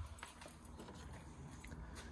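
Quiet pause with a steady low hum and a few faint light clicks.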